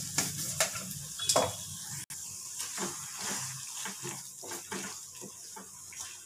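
Spatula stirring a thick coconut and ridge gourd chutney in an aluminium kadai, with irregular scrapes and knocks against the pan over a steady sizzling hiss. The knocks are loudest in the first second and a half.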